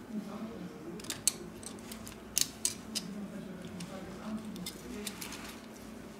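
A few light, sharp clicks and ticks from metal tweezers and the phone's motherboard as the board is lifted out of the frame, spread irregularly over a low steady background hum.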